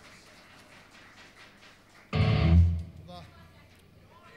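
A single loud chord on amplified electric guitar and bass, struck about two seconds in, with a deep bass note that rings for about half a second and dies away. Otherwise low room noise.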